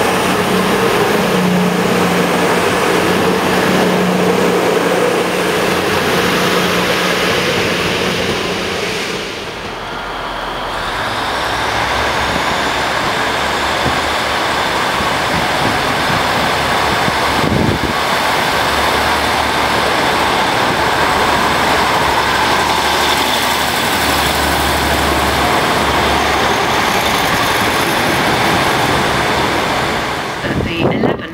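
A Virgin Voyager diesel multiple unit's engines running as it moves off. After a cut, a Class 150 Sprinter diesel unit's engines run loudly as it moves along the platform under the station roof, with a rising whine just after the cut.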